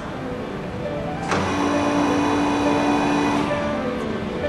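Oil country lathe's rapid-traverse drive moving the tool slide: a click of the switch a little over a second in, then a steady motor hum for about two seconds before it stops.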